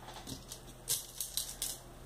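Small plastic beads clicking against each other and their plastic box as fingers pick one out: a few light, sharp ticks in the second half.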